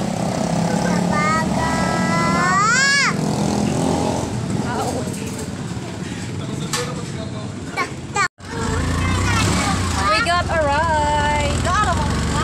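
Steady low rumble of a passenger vehicle's engine heard from on board, with a small child's voice rising in pitch early on. About eight seconds in the sound drops out for a moment and gives way to a heavier low hum with voices.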